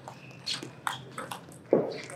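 Table tennis ball being hit back and forth in a rally: about four sharp clicks of the ball on bats and table, roughly every half second, with a short lower-pitched sound near the end.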